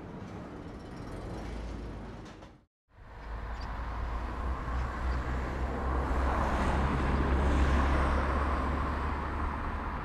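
Outdoor road-traffic noise, a steady rumble and hiss. It cuts out briefly just before three seconds in, then returns and swells to its loudest a little past the middle before easing off.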